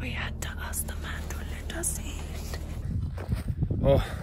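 Hushed whispering over a steady low hum, then a run of low knocks and handling bumps, with a short voiced sound just before the end.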